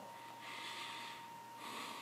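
A man's faint breathing in a pause between words: two soft breaths, the first about a second long and the second shorter near the end. A faint steady high tone runs underneath.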